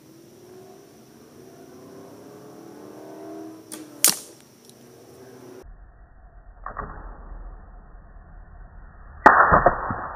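A recurve bow shot: the string's release and the arrow striking a poker chip come as one sharp crack about four seconds in. The same shot then plays again slowed down, deep and muffled: a dull thud, then a loud low smack of the hit near the end.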